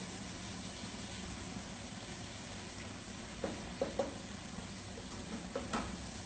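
Faint steady kitchen background hum with a few light knocks and clinks of a utensil and cookware, as a pot on a gas stove is stirred.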